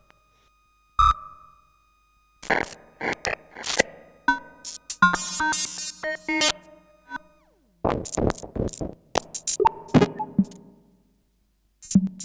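Mashed-up TR-808 drum samples played back in pieces by a Morphogene and ring-modulated through a Serge variable-Q filter at maximum resonance. Irregular hits ring with pitched tones, broken by short silences, with one tone falling steeply about seven seconds in.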